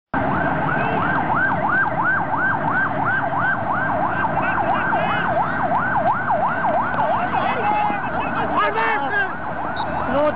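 A siren, its tone sweeping up and down about three times a second over steady background noise. The sweeps break up and turn irregular near the end, with voices mixing in.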